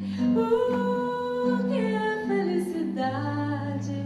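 A woman singing a slow bossa nova melody live, with held notes, over nylon-string guitar and sustained low bass notes.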